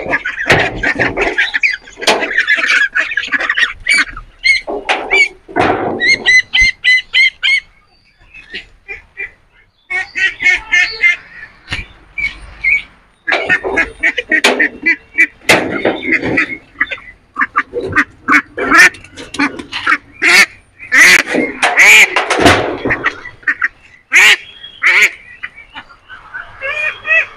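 Domestic ducks quacking over and over in noisy bursts, with a pause about a third of the way through. Sharp knocks of bricks being handled are scattered among the calls.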